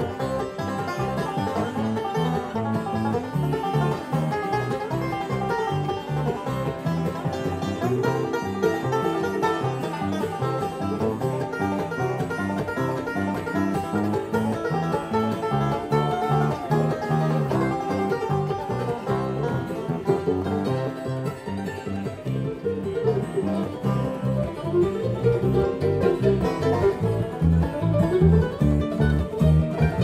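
Live bluegrass band playing an instrumental passage, a five-string resonator banjo picking the lead over electric bass.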